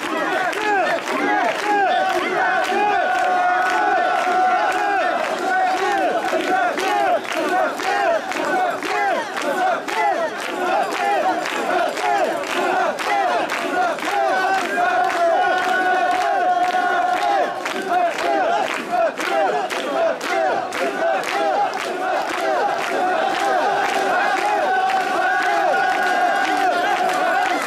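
Mikoshi bearers chanting and shouting together as they heave the portable shrine along: a dense, continuous mass of rhythmic shouting voices.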